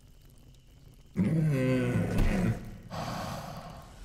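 A cartoon Tyrannosaurus's vocal sound effect: about a second in, after near silence, a low drawn-out groaning grunt, followed by a softer breathy exhale as it settles down.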